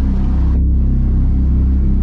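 Steady, loud low rumble of a motor vehicle's engine, heard from inside the moving vehicle.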